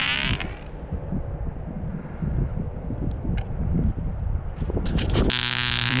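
Wind buffeting an outdoor microphone, an irregular low rumble. About five and a half seconds in, a steady electrical-sounding hum comes in.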